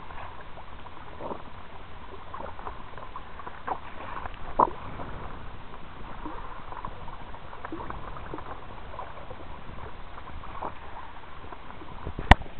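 Seawater splashing and rushing along the hull of a kayak as a hooked hammerhead shark tows it, with many small splashes and one louder slap about four and a half seconds in.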